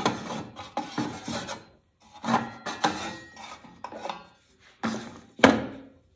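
Cut pieces of wood being handled, slid and set down on a table saw's metal top: a run of scrapes and knocks with short pauses between them, the loudest a sharp knock near the end.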